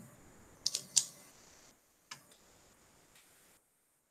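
A few short computer clicks: two close together under a second in and a fainter one about two seconds in, over faint hiss that cuts off suddenly near the end.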